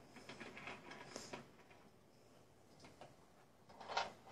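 Faint, sparse ticks and rustles during the first second and a half: a Russian dwarf hamster picking through dry food in a plastic bowl, emptying it into her cheek pouches.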